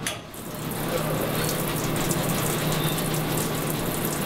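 Water running steadily from a surgical scrub-sink tap during a pre-procedure hand scrub. It fades in over the first half second, with a low steady hum underneath.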